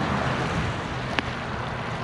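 Steady rushing outdoor noise of wind and traffic over wet pavement, slowly fading, with a single sharp click about a second in.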